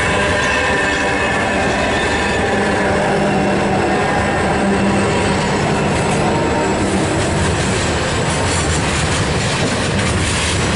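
A freight train passing close by: G class diesel-electric locomotive G539 and the 81 class locomotives behind it run past with their engines working. About six or seven seconds in, the engine note gives way to the steady rolling rumble of grain hopper wagons on the rails.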